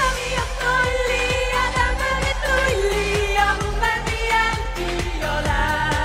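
Folk-pop song sung live by a group of women, several voices in harmony over a steady drum beat.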